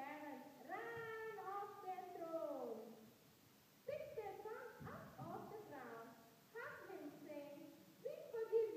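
A high voice speaking, distant and indistinct, in three drawn-out phrases with short pauses between.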